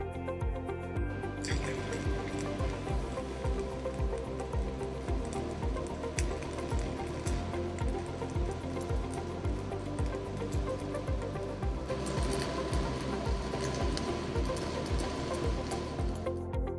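Stick welding (SMAW) arc with a 1/8-inch 7018 electrode, crackling and hissing steadily as the root pass is run, starting about a second in and louder near the end. Background music with a steady beat plays over it.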